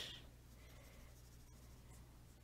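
Near silence, with the faint scratching of a coloured pencil shading on paper.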